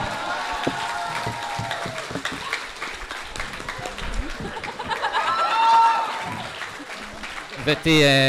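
Live audience applauding, a dense patter of hand claps with a few voices calling out over it.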